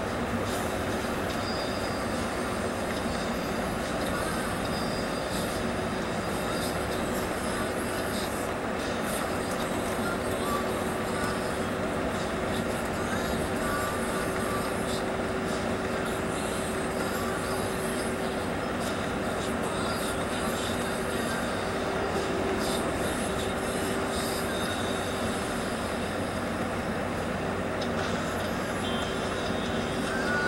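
Steady running noise heard inside a Mercedes-Benz O-500RSDD double-decker coach at highway speed: engine and tyre rumble with a steady whine running through it.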